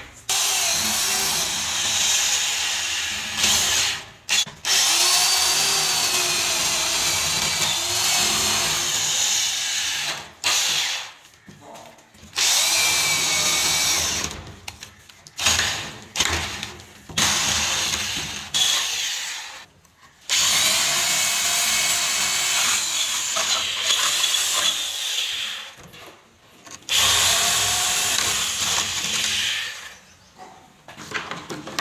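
Handheld electric drill boring into a wooden door with a flat spade bit, running in bursts of a few seconds each with short stops between. The motor's pitch wavers as the bit bites into the wood.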